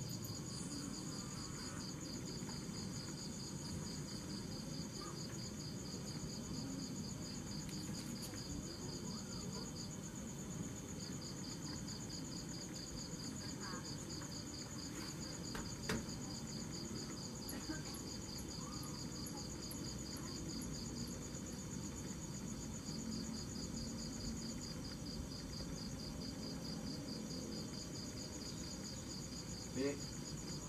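Crickets chirping in steady, evenly pulsed trills at two different pitches. The lower-pitched one falls silent for about a second twice, once about a third of the way in and again later. Underneath is a low background hum, with a single sharp click near the middle.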